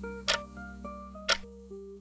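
Clock-tick countdown timer sound effect, one sharp tick a second (two in all), marking the seconds left to answer. Soft background music with held notes runs under it.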